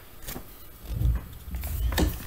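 Handling noise from a picture book being moved and brushed close to the microphone. There are low thuds about a second in and again near the end.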